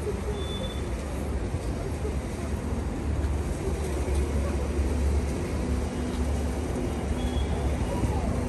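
Steady low rumble of an idling motor vehicle engine.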